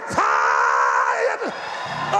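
A man's long, high-pitched wordless shout from the pulpit, held steady for about a second before breaking off.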